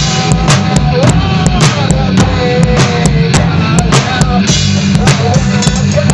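Rock band playing live in a rehearsal room: a drum kit with kick and snare under electric bass and electric guitar, in an instrumental passage. A melody line with held, bending notes runs over the drums.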